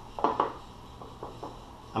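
Wet fingers pressing and spreading sticky sushi rice over a nori sheet on a plastic-covered bamboo mat: a few soft presses, the clearest near the start, then fainter ones, over a steady low hum.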